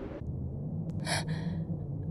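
A woman's short, sharp intake of breath about a second in, over a low steady hum.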